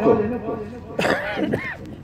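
A man clearing his throat into a microphone: a sudden harsh vocal sound about a second in, with a shorter one following.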